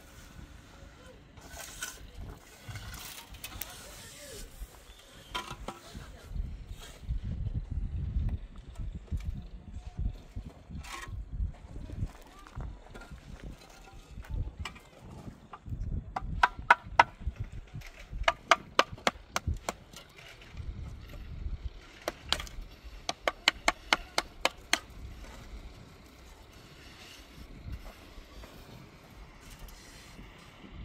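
Hollow concrete block struck with a small hand-held tool or stone, in three quick runs of sharp taps about halfway through, with scattered knocks of blocks being handled around them.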